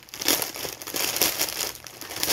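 Clear plastic bag crinkling in irregular rustles as it is handled and turned in the hands.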